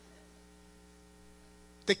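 Faint, steady electrical mains hum made of several evenly spaced steady tones, heard during a pause in speech; a man's voice starts again right at the end.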